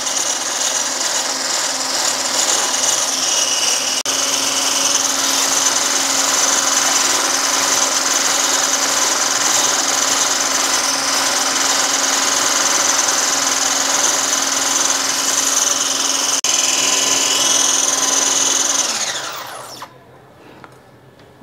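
Electric hand beater with a wire whisk attachment running steadily at speed, whipping egg whites into stiff foam in a bowl. Near the end the motor is switched off and winds down to a stop.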